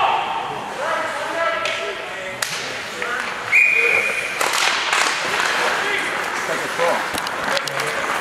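A referee's whistle blows once, a short steady blast about three and a half seconds in, over the noise of a hockey rink: voices calling out and a few sharp knocks of sticks or puck.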